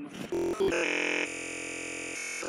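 Electronic, synthesizer-like tones: a few short notes that switch abruptly, then one held note lasting over a second.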